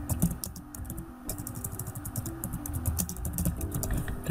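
Typing on a computer keyboard: a rapid, uneven run of key clicks, over background music.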